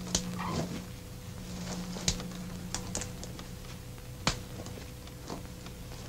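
A few sharp, irregularly spaced clicks and snaps over a low steady hum, with a brief falling sound about half a second in.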